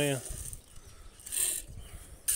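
Dry grain poured from a plastic scoop into a steel pan and scooped again, a brief rattling hiss about one and a half seconds in.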